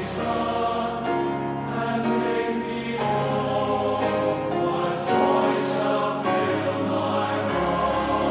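Choir singing a hymn in slow, sustained chords, the harmony shifting about once a second.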